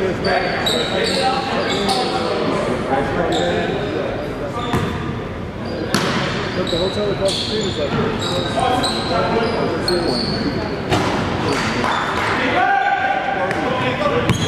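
Basketball bouncing on a hardwood court, repeated sharp bounces with short high squeaks, echoing in a large gym.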